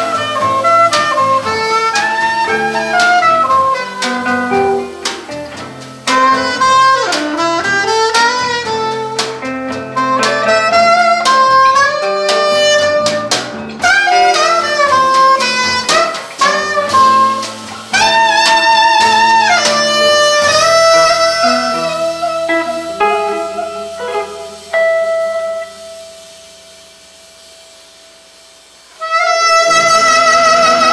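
Live jazz quartet: a soprano saxophone plays a fast melodic line over hollow-body electric guitar, electric bass and drum kit. About two-thirds of the way through, the band thins to long held notes and falls quiet, then the full band comes back in loudly near the end.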